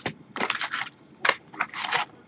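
A cardboard box of Topps Chrome trading-card packs being torn open and its foil packs handled: a series of short crinkling, tearing rustles.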